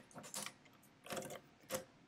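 Herzstark Austria Model V step-drum mechanical calculator being handled: a few short, separate metallic clicks from its controls.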